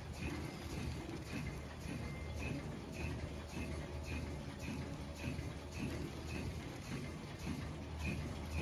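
Mask packaging machine running: a steady low hum with a short high chirp repeating evenly about twice a second.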